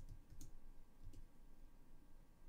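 A few faint, isolated computer keyboard key clicks, spaced well apart, over a low background hum.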